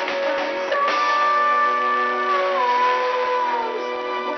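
Live band playing guitars and keyboard, with strummed guitar under a long held note that steps down in pitch partway through.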